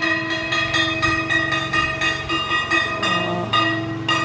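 A puja hand bell rung continuously, its clapper striking about four times a second over a steady, overlapping ringing.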